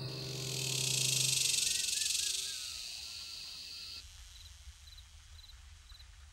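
Insect chorus, a steady high hiss that swells and then cuts off about four seconds in, with a few short bird-like chirps in the middle and faint chirps after it. A low held tone fades out underneath in the first two seconds or so.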